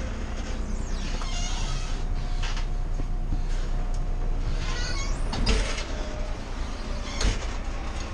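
Bus engine idling, heard from the driver's cab, with scattered clicks and rattles from the cab fittings. There is a short noisy burst about five seconds in and a sharp knock about seven seconds in.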